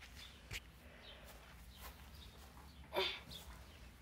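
A horse gives one short breathy snort about three seconds in, with a faint sharp click about half a second in.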